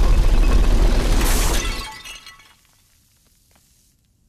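Cartoon crash sound effect: a loud, deep smash with shattering, glass-like breakage and a few clinking pieces, dying away about two seconds in.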